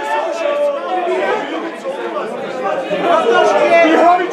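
Several men's voices talking over one another in continuous, overlapping chatter.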